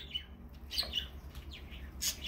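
Small birds chirping: short, high, scattered calls, several of them falling in pitch.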